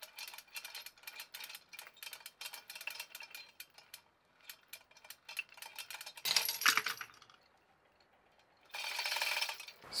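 Steel hook, chain and shackles clicking and creaking as the pull on them rises, then about six seconds in a sharp metallic clank with a short ring as the load lets go: the CNC-machined aluminum test hook giving way under about 62 kg. A brief rustle near the end.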